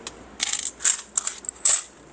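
Metal coins clinking against one another as they are pushed around and sorted by hand in a tray: a string of short, bright chinks, the loudest near the end.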